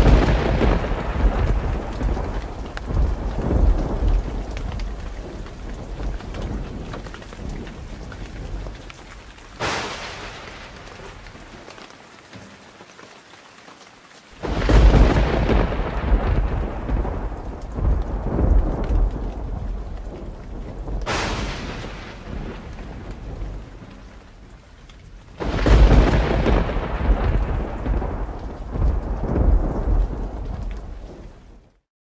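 Thunderstorm: thunder over a steady wash of rain. Five peals, at the start, about a third of the way in, about halfway, about two-thirds in and near the end; two of them are sharp cracks and three are deep rumbles, each dying away over several seconds.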